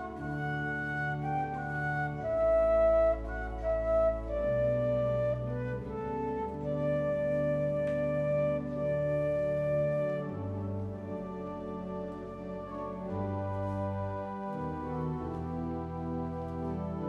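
Flute playing a slow prelude melody over an accompaniment of long, held low notes that change every couple of seconds.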